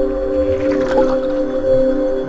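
Logo intro music: a held ambient synth chord, with a rushing sound effect that swells and peaks about a second in.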